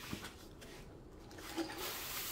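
Faint rustling and crinkling of a thick diamond painting canvas and its plastic cover film as it is unrolled by hand, getting louder toward the end.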